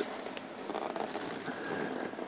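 Faint handling noise: light rustling and a few small clicks as fingers work at a windshield mounting bolt and the plastic screen.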